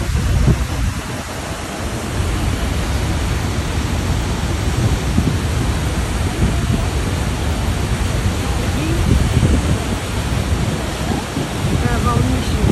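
Horseshoe Falls at Niagara Falls pouring over the brink close by: a loud, steady rush of falling water, heaviest in the low end.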